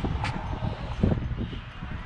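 Footsteps on wet concrete: a few uneven steps over a steady low rumble of handling and wind noise on a handheld camera.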